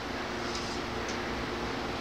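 Steady background hum and hiss with a few faint held tones, as a running fan makes; no sanding is heard.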